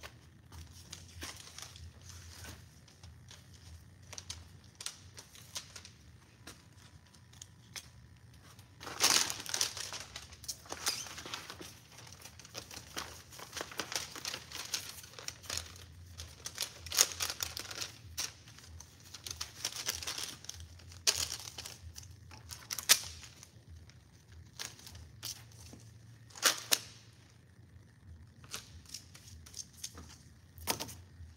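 Rolls of paper adhesive labels and their backing liner being handled and unwound by hand while loading a labeling machine: irregular crinkling and rustling, busiest through the middle stretch, with a few louder sharp crackles.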